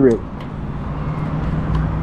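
Steady low vehicle-like hum in the background, with a couple of faint clicks as the ignition key of a Ducati Monster 1200 S is switched on.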